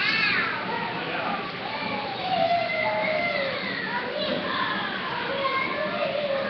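Many children's voices chattering and calling over one another, with no clear words.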